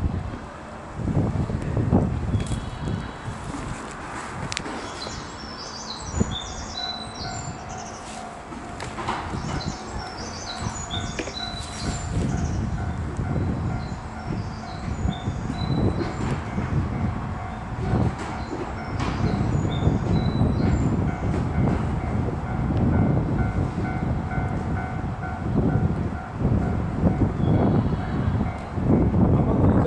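Small birds chirping in repeated short falling calls, heard over a low uneven rumble of wind and movement on the microphone. A steady electrical hum runs underneath from about a third of the way in.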